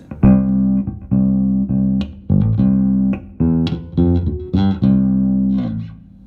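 Electric bass guitar played through a Behringer Ultrabass BX4500H 450-watt bass amp head: about eight plucked notes, each held under a second. The gain is turned up to where the tone starts to take on a slight saturation.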